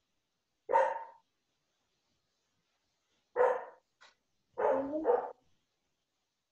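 An animal calling in four short, loud bursts: one about a second in, another about two and a half seconds later, then two close together near the end.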